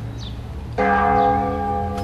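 A large bell struck once about a second in, its tone ringing on and slowly fading.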